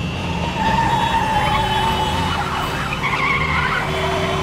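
Cartoon sound effect of car tires squealing in a wavering screech as a vehicle skids along, over the noise of its engine.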